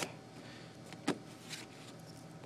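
Cardboard keyboard box being handled and turned over, with faint rustling and one sharp click or tap about a second in, then a fainter one.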